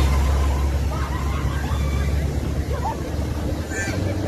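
A 4x4's engine running steadily as it drives through a flooded ford, with water spraying and sloshing around it.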